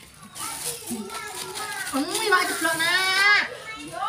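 Speech: high-pitched voices talking, too unclear for words to be made out, with a longer rising-and-falling call in the second half.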